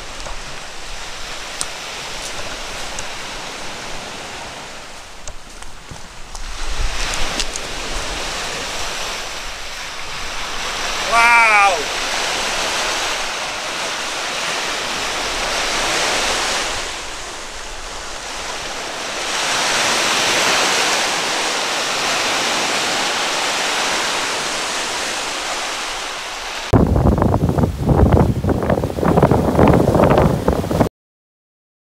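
Lake waves breaking and washing on a sand shore, the surf swelling and fading in surges, with wind. A short wavering call sounds about eleven seconds in. Near the end, heavy wind buffets the microphone over the surf.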